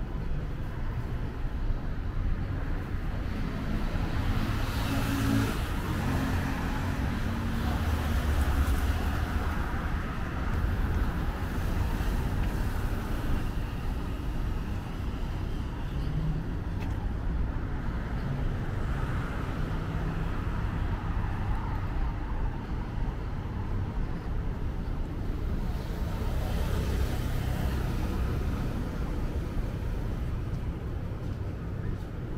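Street traffic: a steady low rumble of cars on the road, with a vehicle swelling up as it passes about five seconds in and another near the end.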